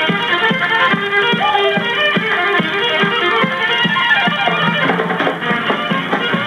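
Small country band playing live: a fiddle leads over drums and keyboard, with a steady beat of about three strokes a second.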